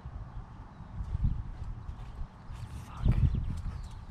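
Wind rumbling on the camera microphone, with a louder gust about a second in. From about three seconds in come irregular thumps and clicks of the camera being handled.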